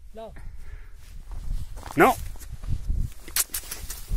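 Footsteps and rustling in dry grass and stony ground, with a low rumble from handling and a few sharp crunches about three and a half seconds in. A man's voice says "No" once, about halfway through.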